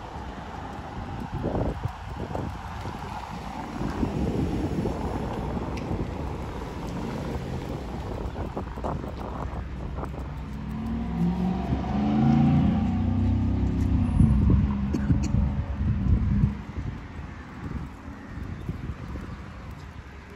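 Cars driving past on a street, one passing close and loudest about twelve to sixteen seconds in, over a steady low rumble.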